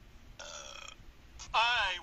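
A man's loud cartoon burp about one and a half seconds in, lasting about half a second and falling in pitch, played through a TV speaker. A shorter, quieter pitched sound comes about half a second in.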